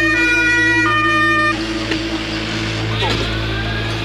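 Ambulance two-tone siren: one note, then a second note a little under a second in, cutting off suddenly about a second and a half in.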